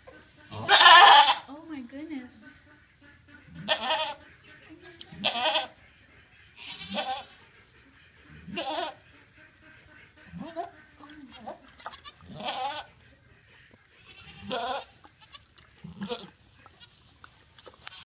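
Goat bleating over and over, about ten short pitched calls spaced every one and a half to two seconds, the loudest about a second in, while a doe is giving birth.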